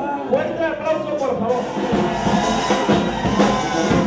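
A charanga band playing live dance music, drums with brass, with a voice over it for the first second and a half; the band sounds fuller from about two seconds in.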